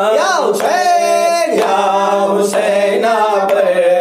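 A voice chanting a noha, a lament for Imam Husain, in a slow melody of long held notes that bend and waver in pitch.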